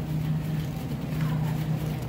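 Steady low machinery hum of a supermarket, such as refrigeration or ventilation plant, under a wash of store noise.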